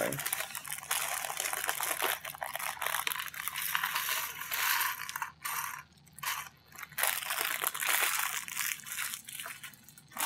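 Loose plastic LEGO pieces clattering and rattling against each other and the table in a dense, continuous rush, with a short lull about six seconds in.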